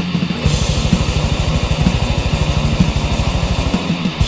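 Black/death metal recording: distorted guitars over rapid, evenly spaced kick-drum strokes that start about half a second in and break off briefly near the end.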